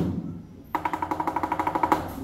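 Lion dance percussion band of drum and cymbals: one loud strike at the start that dies away, then, under a second in, a fast even roll of about ten strokes a second with a ringing metallic tone.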